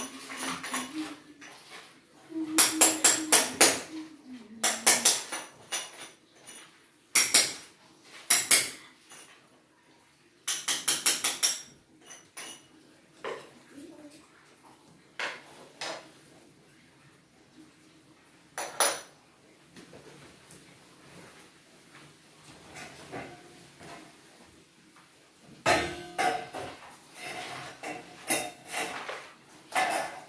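Metal clattering and rapid tapping, in repeated short bursts, as metal parts and tools are handled.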